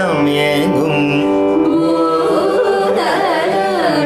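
Carnatic vocal singing: a voice glides and oscillates through ornamented phrases over a steady drone.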